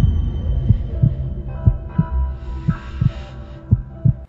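Heartbeat sound effect: pairs of low thumps about once a second, over a steady low synth drone.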